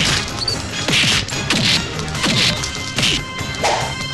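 Movie fight sound effects: about five punch whacks in quick succession, each led in by a swish, over background music.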